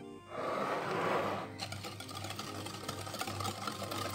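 A wire whisk beating a thin yogurt-and-sugar batter in a glass bowl, a quick run of fine scraping ticks that sets in about a second and a half in, after a short soft rustle.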